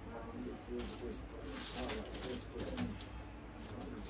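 A dove cooing faintly: a run of soft, low notes lasting about three seconds. Light clicks of glazed ceramic dishes being handled sound alongside.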